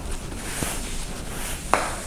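Quiet handling sounds of hands pressing raw pizza dough around the rim of an aluminium pan, with one light tap about 1.7 seconds in.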